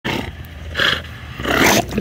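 Two bulldogs growling while playing tug-of-war over a toy, with two louder bursts, one about halfway through and one near the end.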